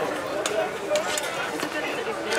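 Indistinct background voices chattering, with a few sharp metallic clinks of tongs against a steel pasta pot as fresh tagliatelle is lifted out of the boiling water.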